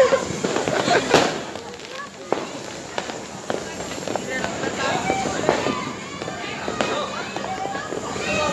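Fireworks going off all around: scattered sharp bangs several seconds apart, the loudest right at the start and about a second in, with people's voices throughout.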